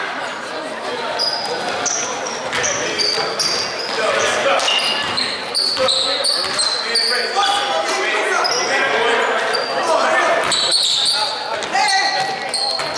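Basketball game in a gym: rubber-soled sneakers squeaking on the hardwood court, the ball bouncing, and players' and spectators' voices calling out, all echoing in the large hall.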